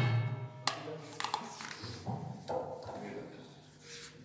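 Music with tabla drumming ending and its last notes dying away, followed by a few soft scattered taps.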